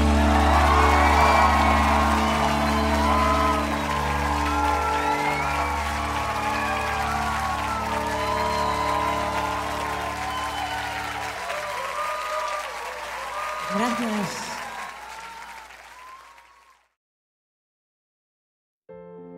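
The end of a live rock song: a held final chord dies away under audience cheering, whooping and applause, and everything fades out to silence about a second before the end.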